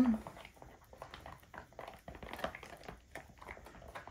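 A stick stirring thick acrylic paint in a plastic tub: soft, irregular scrapes and clicks of the stick against the tub's sides as gold is mixed into brown.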